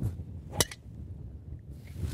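A golf club striking a ball off the tee: one sharp click about half a second in, from a well-struck tee shot. A faint low wind rumble lies underneath.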